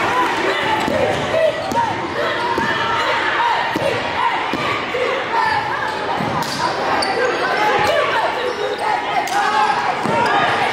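Live sound of a high school basketball game in a large, echoing gym: a basketball being dribbled on the hardwood floor, with sharp knocks, over a continuous din of crowd chatter and shouting voices.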